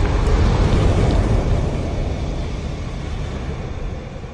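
A low, noisy rumble from a fiery logo sound effect, the tail of an explosion, fading steadily away.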